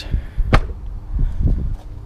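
A single sharp knock about half a second in, with smaller knocks and a low rumble around it.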